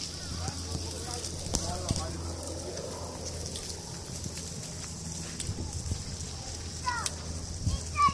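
Faint scattered talking, then a small child's short high-pitched calls near the end, over a steady high hiss and a low rumble.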